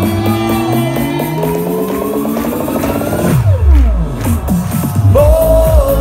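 Live Schlager-pop concert music played loudly over a hall PA in an instrumental passage with no lyrics. Slowly rising synth lines give way to a falling sweep a little past halfway, and a held sung note comes in near the end.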